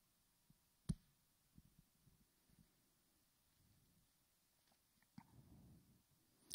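Near silence: quiet room tone, broken by one sharp click about a second in, a few faint ticks, and a soft low rustle near the end.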